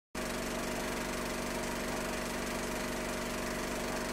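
A steady mechanical whirring hum with a fine fluttering texture, even in level throughout. It starts abruptly just after the beginning.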